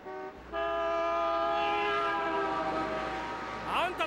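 Car horn: a short honk, then one long honk held for about three seconds, several tones sounding together.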